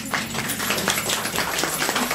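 Small audience clapping: a dense patter of many separate hand claps.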